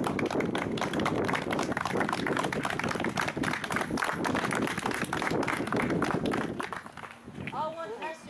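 A small group applauding, dense hand claps mixed with voices, dying away about seven seconds in; a few short, high gliding chirps follow near the end.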